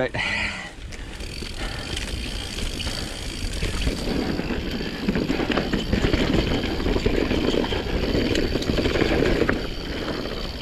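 Mountain bike riding down a dirt singletrack: wind rushing over the camera microphone together with tyre noise and a steady clatter and rattle of the bike's chain and frame over rough ground.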